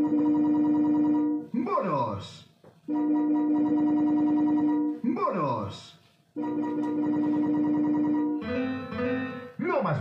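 Electronic sounds from a Gigames 'El Chiringuito' slot machine counting up bonus credits. A held synthesised tone with fast ticking plays while the counter climbs, three times for about one and a half to two seconds each, and each is followed by a short swooping jingle. Near the end a different warbling electronic tune plays.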